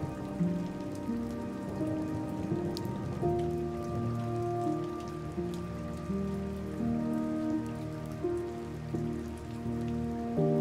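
Rain falling steadily with scattered drop ticks, mixed with soft, slow relaxation music of held notes that change about once a second.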